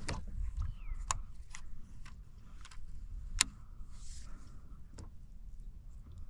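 A series of sharp clicks and taps from fishing tackle being handled while a soft-plastic bait is rigged, about six in all, the loudest about three and a half seconds in, over a low rumble.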